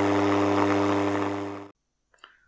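Steady buzzing hiss from a software-defined radio receiver's AM audio: a low hum under a wide hiss, cutting off abruptly near the end.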